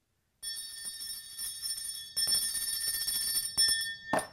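A small brass handbell rung rapidly and continuously for about three and a half seconds, getting louder partway through, then stopping: a school bell signalling the start of class.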